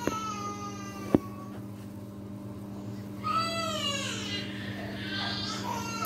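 A cat meowing several times in long, falling calls over the steady hum of a Samsung front-loading washing machine on its final spin. Two sharp clicks come at the start and about a second in.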